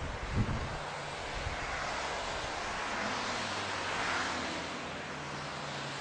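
A steady rushing noise that swells and eases, with a short thump about half a second in and a faint low hum underneath.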